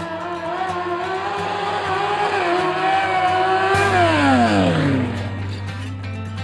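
Honda CBR900 inline-four engine held at high revs, its pitch slowly climbing, then the revs falling away steeply about four seconds in. Music comes in under it as the revs drop.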